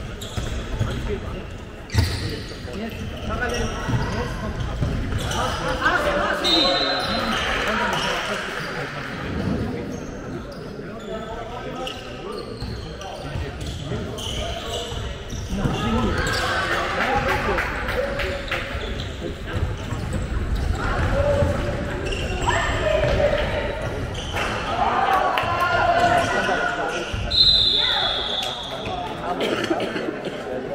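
A handball bouncing on a wooden sports-hall floor as players dribble, with footsteps and players' and spectators' voices echoing in the large hall. Two short high-pitched squeaks come through, one about six seconds in and one near the end.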